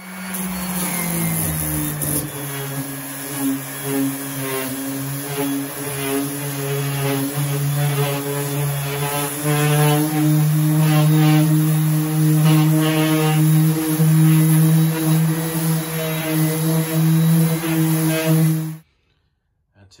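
Tool Shop corded random orbital sander switched on and sanding a drywall ceiling. Its motor hum drops in pitch over the first couple of seconds, then runs steadily, getting louder about halfway through as the pad is worked against the ceiling. It cuts off suddenly near the end.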